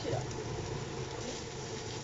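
Zucchini galettes frying in oil in a pan, a steady sizzle with a low hum underneath.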